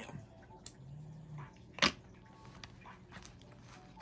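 Cardboard trading-card box being handled and opened by hand: faint rustling and small clicks, with one sharp click a little under two seconds in as the loudest sound.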